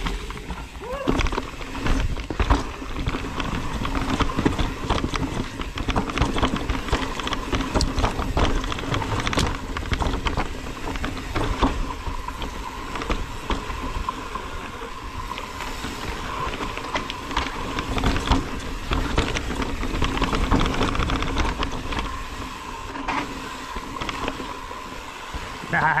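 Mountain bike riding down rocky singletrack: tyres rolling and knocking over rocks and roots with the bike rattling, many sharp knocks over a steady buzz.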